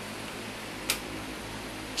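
Steady whir of a gaming PC's case fans running, with one sharp click a little under a second in.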